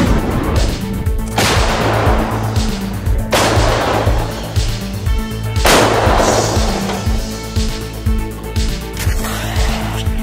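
Background music with a steady beat, broken by four loud blasts of weapon fire in the first six seconds, each dying away over about a second.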